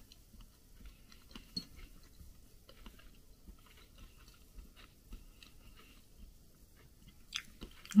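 Quiet chewing of a mouthful of food, with faint small clicks and mouth noises.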